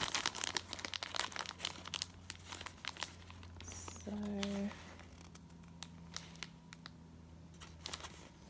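Clear plastic wrapping and a paper tag crinkling as they are handled, with dense crackles for the first few seconds, then only scattered ones.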